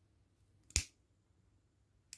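A handheld lighter struck once: a single sharp click under a second in, which lights the flame.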